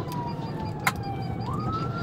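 Police car siren wailing, its pitch falling slowly and then sweeping quickly back up about one and a half seconds in, over the engine and road noise of the pursuing patrol car. A single sharp click just under a second in.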